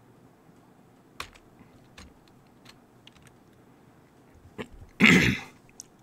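A few scattered computer keyboard and mouse clicks, then a short, loud cough about five seconds in.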